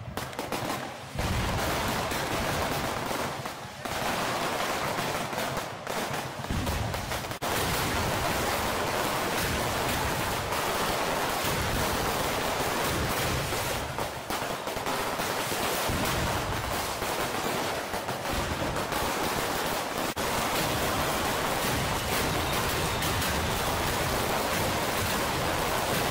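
Dense, continuous crackle of rapid firecracker and fireworks bangs over crowd noise at a Cuban street festival (parranda).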